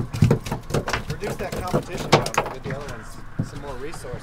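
Irregular sharp knocks and slaps from a freshly landed red snapper flopping on the fiberglass deck of a boat, with faint voices in the background.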